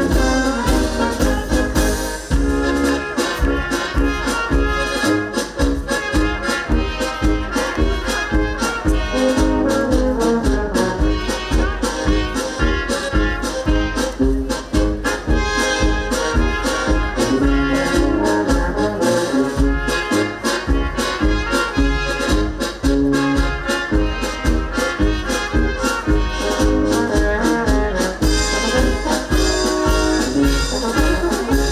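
Live brass band, with trumpets, trombones and saxophone, playing a lively dance tune with a steady, even beat.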